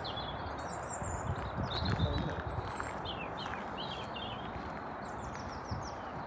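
Small birds chirping in short high twitters several times, over a steady low rush of wind outdoors by a pond.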